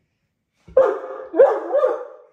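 Great Dane barking: about three loud, short, pitched barks in quick succession, starting just under a second in.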